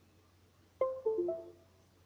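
A computer's USB device notification chime: a short run of about four notes stepping down in pitch, about a second in. It is the computer reacting to the phone being plugged in over USB.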